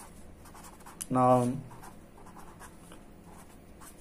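Red marker pen writing on paper, faint scratchy strokes, with a man saying the single word "noun" about a second in.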